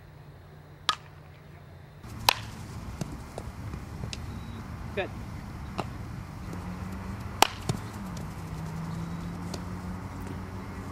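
A softball bat striking a pitched ball, one sharp crack about a second in. Then, during infield practice, several more sharp cracks of ball on bat and glove, two of them loud, over outdoor noise with a steady low hum.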